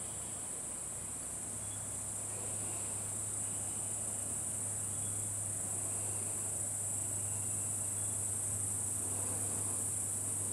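Steady, high-pitched chorus of insects in the forest, unbroken and growing slightly louder toward the end.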